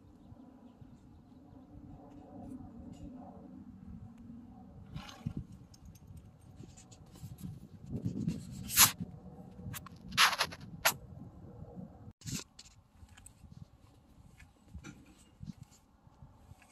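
Spray bottle of horse-hair detangler spritzed into a horse's tail: a handful of short hissing sprays through the middle, the longest about two-thirds of the way through.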